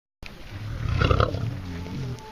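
Male lion growling: a deep, rough rumble that swells to its loudest about a second in.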